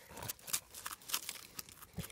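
Faint, scattered crunching and rustling of snow as a gloved hand reaches into it beside a stump.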